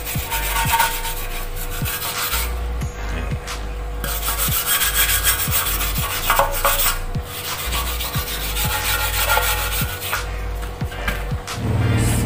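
Wire brush scrubbing back and forth on a motorcycle fuel tank, stripping old glue and corrosion from the leaking seam. It runs in bursts of strokes with three short pauses.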